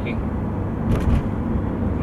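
Steady drone inside the cabin of a Mercedes C220d while driving in town: its 2.2-litre four-cylinder diesel engine running under light load, together with road and tyre noise. A brief sharp sound comes about a second in.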